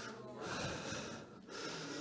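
A faint breath drawn between spoken phrases, with no words.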